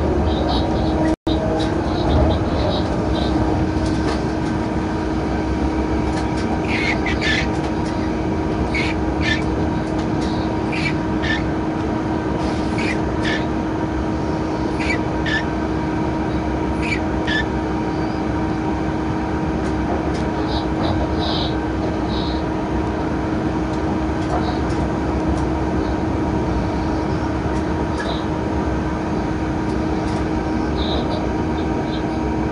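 Steady running noise inside the cab of an electric locomotive on the move: rumble of the wheels on the track with a constant hum, and brief high squeaks that come and go through the middle stretch. The sound drops out for a moment about a second in.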